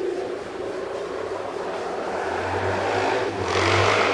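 A passing vehicle: a low engine rumble and a rushing noise that grow louder, peaking near the end.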